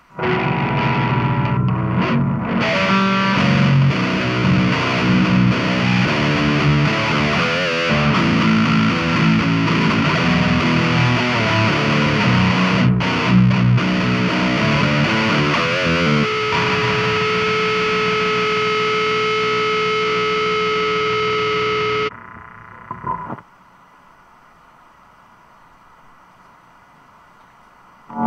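Heavily distorted 8-string Schecter electric guitar through a high-gain BantAmp Zombie amplifier, playing a fast riff for about sixteen seconds, then one chord held ringing for several seconds until it is cut off suddenly.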